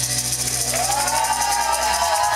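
Live band music: sustained bass notes under a fast, even shaken-percussion beat, with a voice rising into a long held note from about a second in.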